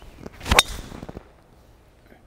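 Golf driver striking a ball off the tee: one sharp crack about half a second in, trailing off over about half a second. The ball is struck flush, out of the middle of the clubface.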